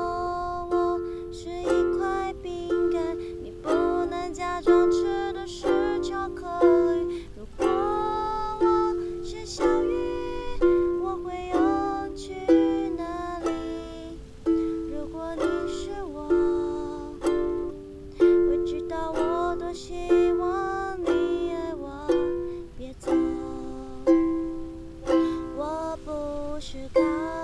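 Ukulele strummed in a steady rhythm, chord strokes about once a second, with a woman singing a Mandarin pop song over it.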